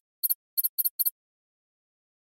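Typing sound effect: four quick, high, clicking blips in the first second, one for each letter as text types itself onto the screen, then they stop.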